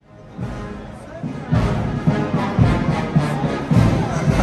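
Military marching band playing a march: brass over a steady bass-drum beat, with crowd chatter around it. The sound fades in at the start.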